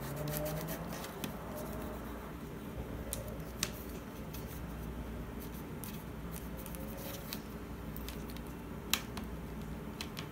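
Bone folder rubbing and pressing paper glued over a cardboard cover, with scattered faint clicks and two sharper ticks, one a few seconds in and one near the end, over a steady low hum.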